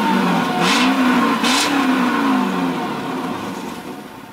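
Mercedes-Benz CL 500's M113 V8 revved twice through its quad exhaust pipes, the pitch climbing and falling with each blip, then sinking back toward idle.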